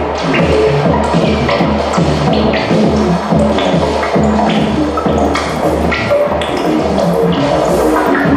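Improvised electronic music from a modular synthesizer: a low bass pulse repeating two or three times a second, under scattered short blips, clicks and brief tones higher up.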